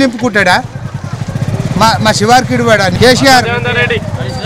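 A man speaking, with an engine running steadily close by underneath, its rapid even pulses filling the gaps between his words.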